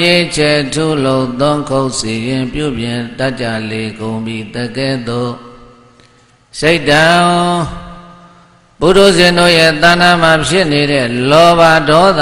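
A Buddhist monk chanting alone in a steady, held-note recitation. The chant comes in three phrases with short pauses in the middle.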